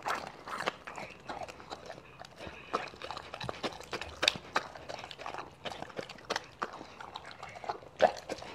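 A Doberman eating raw meat and fruit close to the microphone: irregular short chewing, licking and mouth clicks, a few of them louder about four and six seconds in.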